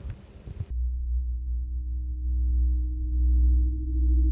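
A low, steady electronic drone from dark ambient background music, starting abruptly just under a second in, with fainter steady tones above the deep hum.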